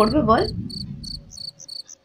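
Crickets chirping steadily in short high chirps, about four a second. A second, fainter and higher series of chirps joins in the second half.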